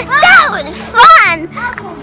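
A young girl's high-pitched excited cries, two loud calls with the pitch sliding up and down, about a quarter second in and again about a second in.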